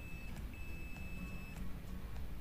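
Digital multimeter's continuity buzzer beeping: a short high beep, then a steady one lasting about a second, as the probes touch a capacitor pad joined to ground on a phone's circuit board. The beep marks a ground connection, not a short.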